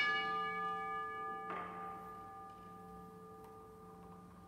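Altar bell rung at the elevation of the chalice during the consecration: a clear ringing tone fading slowly, struck a second time about a second and a half in.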